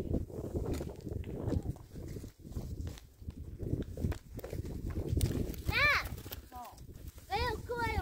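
Rustling, scraping and crackling with many small knocks as a person climbs a rough, stringy-barked tree. A short high call comes about six seconds in, and a few more near the end.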